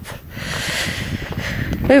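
A rush of air noise on the microphone, swelling for about a second and a half, with an uneven low rumble beneath it.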